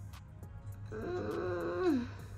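A woman's closed-mouth "hmm" of doubt after sniffing a perfume, held about a second and falling in pitch at the end.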